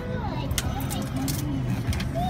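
Steady low rumble of car engines in slow, queued traffic, heard from inside a car, with a person's voice rising and falling over it.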